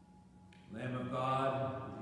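A priest's voice begins a liturgical chant about two-thirds of a second in, on long held notes, after quiet room tone.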